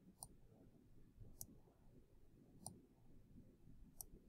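Faint computer mouse button clicks, a few of them evenly spaced about one every second and a bit, as electrons are picked up and dropped in a drag-and-drop simulation.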